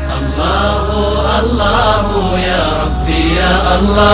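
A nasheed: a solo voice singing a wavering, ornamented melody over low held drone notes that shift pitch a few times.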